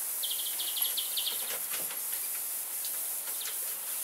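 Misting system nozzles hissing steadily over a birdcage, with a bird giving a quick run of high chirps in the first second or so.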